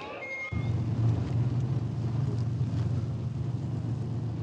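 Heavy vehicle engines running with a steady low rumble that comes in suddenly about half a second in.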